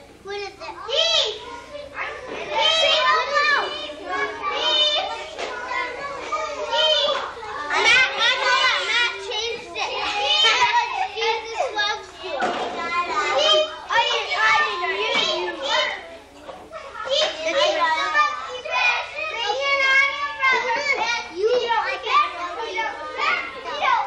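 A group of kindergarten children chattering and talking over one another, their high young voices overlapping without pause.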